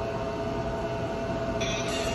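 Steady rumbling noise with a faint steady hum, like a vehicle running, with a higher hiss joining near the end.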